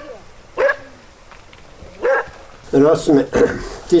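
A dog barking: three short, spaced barks in the first couple of seconds, then a man's voice takes over.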